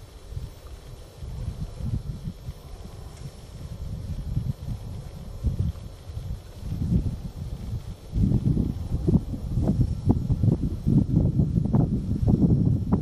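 Wind buffeting the microphone outdoors: an irregular low rumble in gusts, getting louder over the last few seconds.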